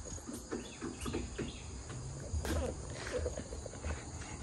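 Steady background drone of insects, with a low rumble and a few faint, indistinct voices.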